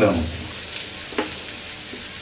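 Sliced onions frying in hot oil in a non-stick pan, with a steady sizzle. A slotted spatula stirs them, with a couple of short scrapes against the pan just under and just over a second in.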